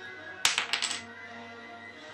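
Wooden Jenga blocks clattering: a quick run of about five sharp clicks about half a second in, sudden enough to startle, over steady background music.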